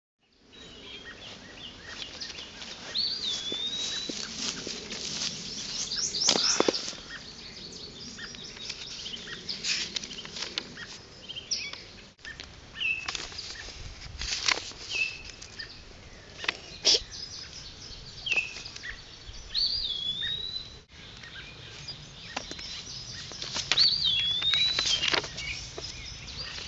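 Wild birds chirping, with one whistled call that swoops up and then down, heard three times. The birdsong breaks off twice for an instant where the audio is cut.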